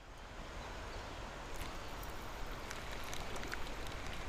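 Steady, even outdoor hiss by a creek, with a few faint clicks.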